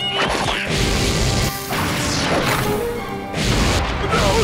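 Cartoon crash and smack sound effects, several hits in a row, over dramatic background music.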